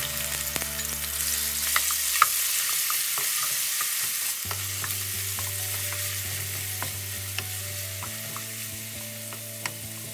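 Diced marinated chicken sizzling in hot oil in a wok, with a wooden spatula stirring it and tapping and scraping the pan in scattered clicks. The sizzle is strongest in the first few seconds and eases off gradually.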